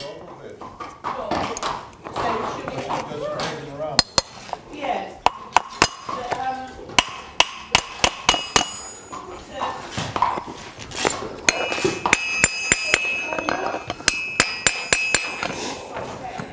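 Farrier's driving hammer striking horseshoe nails to rivet a steel shoe onto a hoof support pad on an anvil: a run of sharp metallic taps starting a few seconds in, the later strikes ringing.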